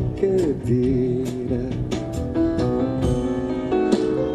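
Live song: a man singing with held, gliding notes over grand piano, with percussion and cymbal strokes keeping time.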